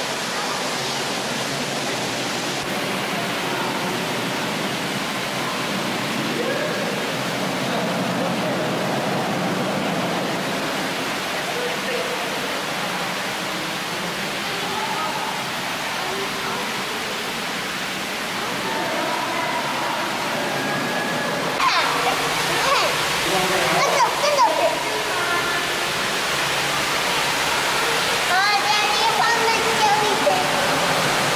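Steady rushing of water in a penguin pool's circulation, an even noise throughout, with indistinct voices of people nearby rising now and then, most around two-thirds of the way in.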